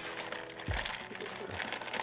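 Plastic fish-shipping bags crinkling and rustling as hands work through the layers of a triple-bagged delivery in a bucket.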